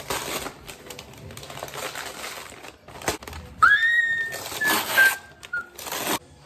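Christmas wrapping paper crinkling and tearing as a flat gift is unwrapped by hand. A bit past halfway a long, high-pitched squeal sounds, sliding slowly down in pitch while the paper keeps tearing.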